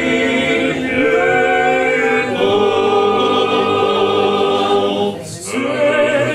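A men's trallalero group singing a cappella: Genoese polyphonic folk song in close harmony. Held chords shift every second or so, with a short pause for breath about five seconds in before the voices come back in.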